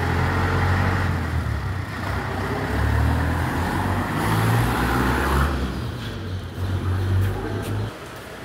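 Mahindra Arjun 555 DI tractor's four-cylinder diesel engine running as the tractor drives off, with a steady low rumble; the sound thins out about five and a half seconds in.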